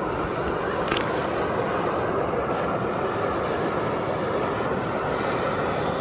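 Steam rushing steadily out of a fumarole vent in a geothermal field, a constant hiss and rush with no let-up.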